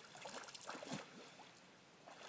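Faint water splashing and trickling from a dog paddling through a pond, a few soft splashes in the first second or so, then quieter.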